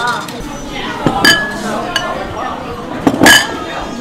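Ceramic bowls and a spoon clinking as bowls are set out on a wooden counter: a sharp clink about a second in and a louder ringing clink near the end, over background voices.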